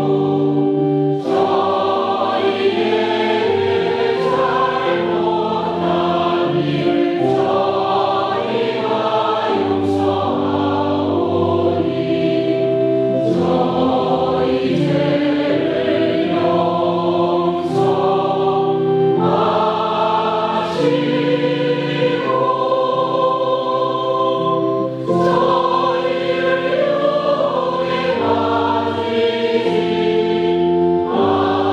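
Choir singing a slow Catholic liturgical chant in several-part harmony, moving in held chords.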